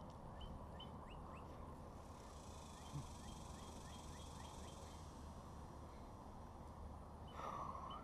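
Faint outdoor background with a bird repeating a short, falling chirp a couple of times a second, in two runs. Near the end comes a brief buzz, like an insect passing close.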